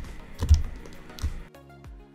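Computer keyboard keys clicking, with a dull thump about half a second in. About halfway through, background music with a steady beat comes in.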